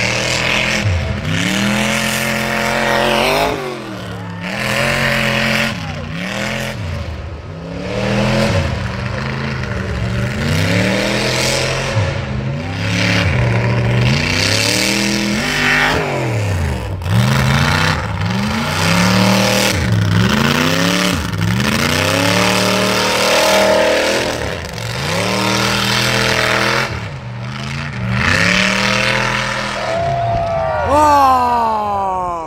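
Mega truck engine revving hard over and over, its pitch climbing and dropping every second or two, with a heavy thump about halfway through.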